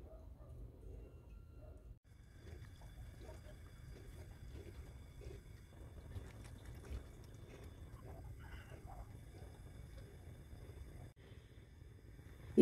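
Faint swishing of a whisk stirring a thin hot-chocolate mixture of milk and cream in a saucepan over a gas flame.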